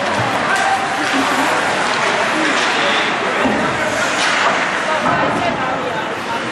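Spectators talking and calling out over one another, the voices overlapping and echoing in an indoor ice rink.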